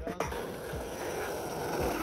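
Skateboard wheels rolling on asphalt, a steady rumble that grows slowly louder as the board approaches.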